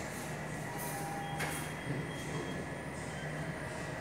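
Steady indoor room noise: a low hum and even hiss with a few faint steady tones, and a single sharp click about a second and a half in.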